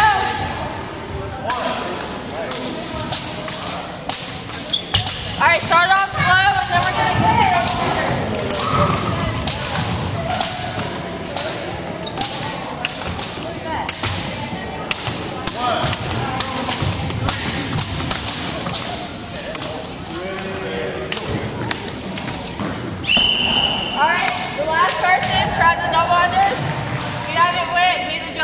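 Long jump ropes slapping a wooden gym floor over and over as they are turned, with jumpers' feet landing, amid bursts of shouting voices.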